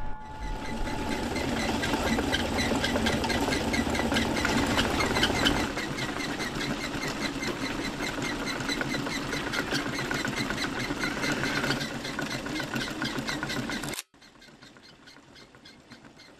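Workshop machinery clattering in a fast, steady rhythm, with a deeper rumble under it for the first several seconds. It stops suddenly about two seconds before the end.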